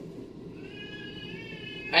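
A faint, drawn-out high-pitched call or whine with overtones, starting a little past halfway and lasting just over a second, over quiet room tone.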